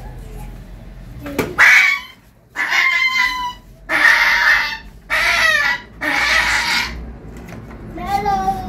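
A puppy crying out in five high-pitched yelps of about a second each, beginning about a second and a half in, while it is dosed with liquid medicine from an oral syringe.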